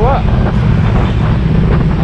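Yamaha Sniper 135 motorcycle's single-cylinder engine running steadily under way, with wind rumbling on the helmet-mounted microphone.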